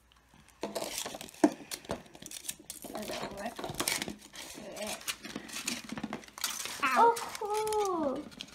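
Foil wrapper crinkling and rustling as it is peeled off a large hollow chocolate egg, with one sharp click about one and a half seconds in. Near the end a child's voice gives a long, falling sound.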